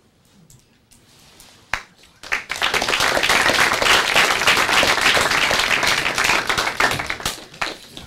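Audience applauding. After a near-quiet start and one sharp click, the applause builds quickly at about two seconds in, holds for about five seconds and fades near the end.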